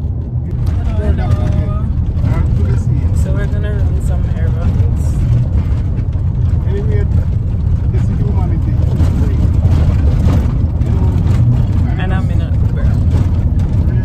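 Steady low rumble inside a car's cabin, engine and road noise, with a woman's voice murmuring now and then.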